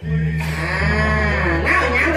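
A performer's long drawn-out vocal note, rising then falling in pitch, over a steady low hum; a shorter vocal phrase follows near the end.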